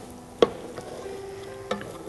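Wooden spoon stirring onions frying in oil in a pot, with a faint sizzle and two sharp knocks of the spoon against the pot, a loud one about half a second in and a lighter one near the end.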